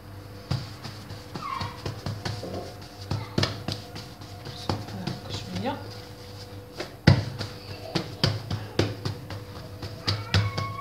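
Hands patting and pressing a round of bread dough on a stone countertop: irregular soft slaps and taps, the loudest about seven seconds in, over a steady low hum.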